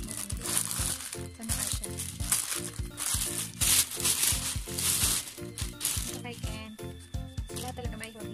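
Background music with a steady beat, with packaging crinkling as it is handled over the first six seconds or so.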